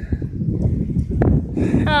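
Wind buffeting the phone's microphone: an uneven low rumble.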